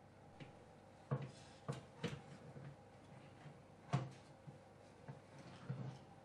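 Metal baking tray sliding out along the oven rack: a series of sharp clinks and knocks, the loudest about a second in and about four seconds in, over a faint steady hum.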